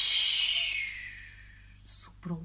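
A woman's voice making a long breathy "shhh" to imitate the wind blowing, loud at first and fading away over about a second and a half.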